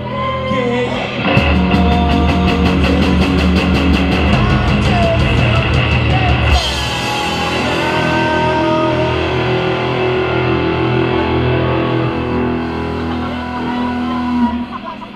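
A live rock band (drum kit, electric guitars and bass) playing loudly. About a second in the full band kicks in with a fast, even driving beat, and about six and a half seconds in that beat drops away into a steadier section of held notes.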